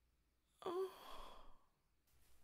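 A woman lets out one short, sad sigh about half a second in. It drops in pitch at its start and trails off into breath, the sound of someone moved close to tears.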